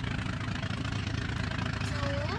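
Steady low rumble of continuous background noise, with no speech over it.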